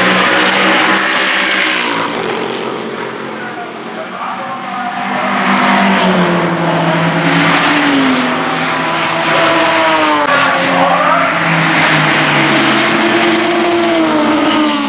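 Several racing car engines running at high revs as the cars pass, their notes overlapping and gliding up and down in pitch. The sound dips briefly a few seconds in and is louder again from about five seconds in.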